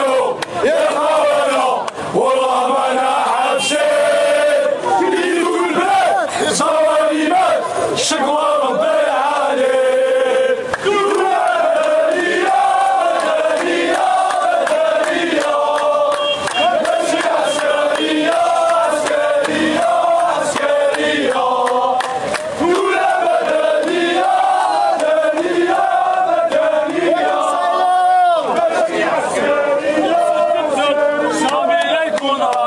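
A large crowd of protesters chanting together in loud, rhythmic unison without a break.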